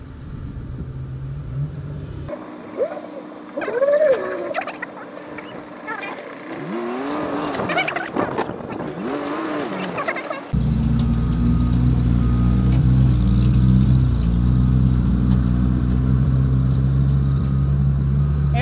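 An off-road vehicle's engine idling steadily and loudly, close to the camera, starting abruptly about ten seconds in. Before that come quieter sounds whose pitch rises and falls.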